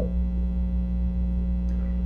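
Steady electrical mains hum: a low buzz with a stack of evenly spaced overtones.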